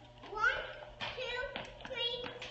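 Young children's voices, indistinct, as they play.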